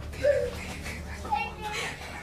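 Low-quality audio recording of an argument: a few short, muffled voice fragments over a steady low hum.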